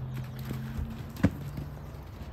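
Hoofbeats of a young horse cantering on arena sand, with one sharp knock about a second in, the loudest sound.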